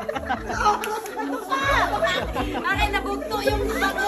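Several people talking and calling out over one another, over background music with a pulsing bass beat.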